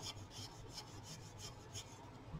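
Arteza EverBlend alcohol marker's broad tip scratching back and forth on cardstock, a faint run of quick strokes, about five a second, that stops near the end.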